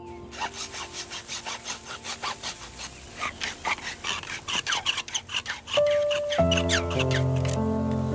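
Hacksaw cutting through a green bamboo stalk: a fast, even run of back-and-forth rasping strokes that stops about six seconds in. Background music plays underneath and swells once the sawing stops.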